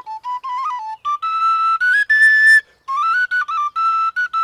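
Wooden end-blown duct flute playing a solo melody of short single notes in phrases. The melody climbs to a held high note about two seconds in, then steps back down after a brief pause.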